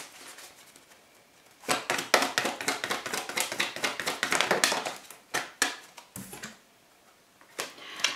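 A deck of oracle cards being shuffled by hand: starting about two seconds in, a quick run of rapid card clicks for about three seconds, then a few separate snaps as cards are drawn and laid down.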